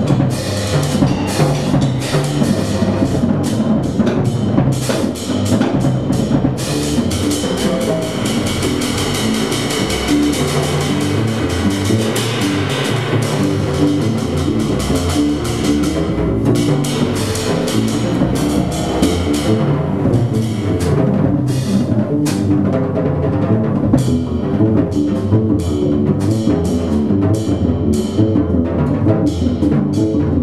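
Free-improvised avant-jazz played live: a drum kit going busily with many cymbal and drum strikes, over electric guitar and upright double bass.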